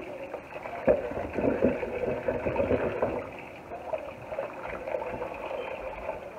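A bamboo skewer pricking pieces of raw pumpkin on a wooden cutting board: a few light, irregular clicks and taps, the sharpest about a second in, over a low steady background noise.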